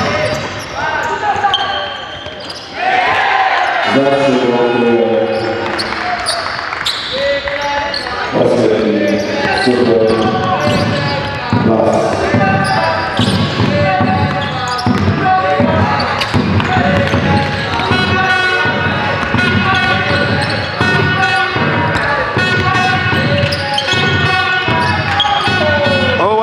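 Basketball dribbled and bouncing on a hardwood court in a large sports hall, with voices throughout.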